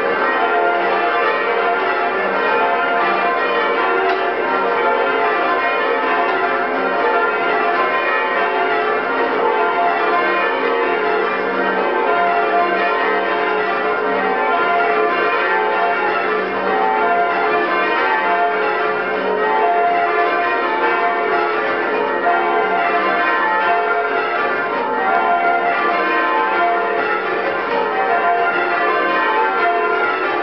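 Change ringing on a ring of eight church bells cast by James Barwell in 1906 (tenor about 705 kg, in F), heard from the ringing chamber just below the bells. It is a continuous, loud and harsh stream of overlapping bell strikes. The uploader calls these bells very oddstruck.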